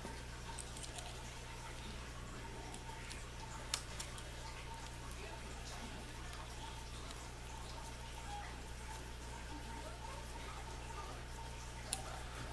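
Faint small clicks and handling sounds of a hex key working the steel screws of scope rings, one sharper click about four seconds in, over a steady low hum.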